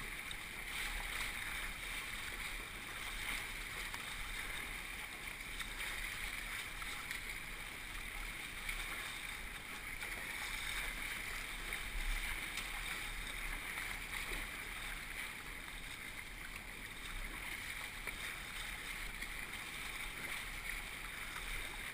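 Whitewater rapids rushing and splashing over and around a kayak's bow in a steady, unbroken wash, heard through a GoPro camera's housing.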